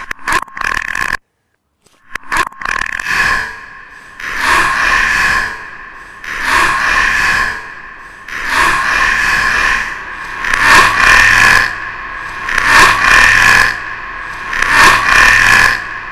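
Experimental noise track: swells of noise repeat about every two seconds and grow louder toward the end, after a short cut to silence about a second in.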